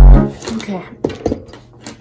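A loud electronic music sting with a heavy low throb cuts off suddenly just after the start. Then, much quieter, a few light clicks and taps of pens and markers being handled on a wooden desk.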